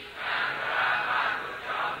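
Many voices reciting Pali together, a blurred swelling wash of a group chant, fading near the end.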